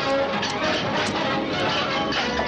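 Film soundtrack of a sword fight: orchestral score under a few short sharp clashes and shouting voices.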